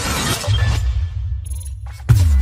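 Sound effects for an animated logo intro: a bright shattering, glittery noise over about the first half second, then a deep bass rumble that carries on as the highs die away.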